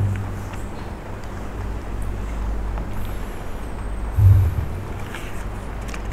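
A steady low background rumble, with a short, louder low thump about four seconds in.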